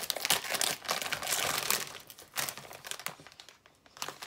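A plastic bag of cotton candy crinkling as it is handled, busiest in the first couple of seconds and then dying away.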